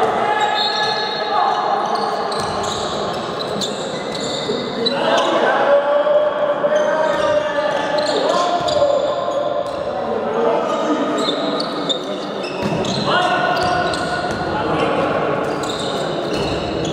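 Indoor handball game in a large sports hall: players shouting and calling to one another, with the ball knocking on the court floor now and then, all echoing in the hall.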